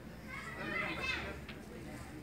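A child's high-pitched voice calling out for about a second, over a low steady background hum of the shop.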